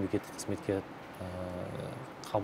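A man's low voice: a few short syllables, then one drawn-out vocal sound held at an even pitch in the second half.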